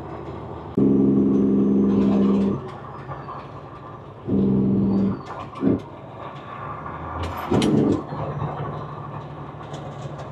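Semi-truck air horn sounding a long blast, then a shorter one, a quick tap and another short blast, each a steady chord that starts and stops abruptly, over the steady drone of the truck's engine and road noise.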